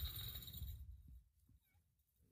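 Low wind rumble on the microphone that fades out about a second in, leaving near silence with a faint bird chirp.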